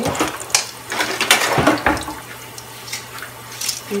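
Sliced garlic sizzling in hot oil in a nonstick skillet, with irregular crackles and pops and a few louder knocks near the middle.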